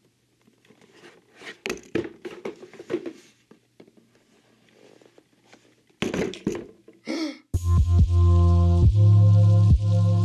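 Cardboard box and card being handled: scattered knocks, taps and rustles. About three-quarters of the way in, loud electronic intro music cuts in, with a deep steady bass and regular beats.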